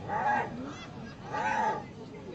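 Spotted hyena cornered by lions, giving two high squealing distress calls about a second apart, each rising and then falling in pitch.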